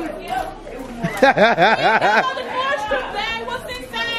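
Indistinct chatter of several voices in a room, with a quick run of voiced syllables a little over a second in. No other sound stands out.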